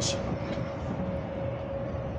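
Steady rumble of vehicle noise with a faint steady hum running through it.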